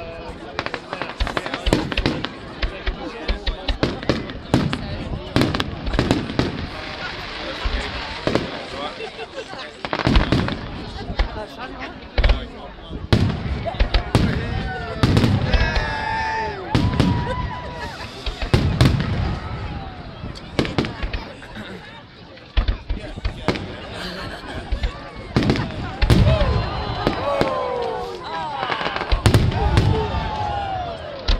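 Fireworks display: aerial shells bursting overhead in a rapid, irregular series of sharp bangs and crackles.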